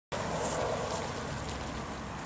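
A power shake sloshing inside a plastic shaker bottle shaken hard by hand, in a rhythm of about two shakes a second.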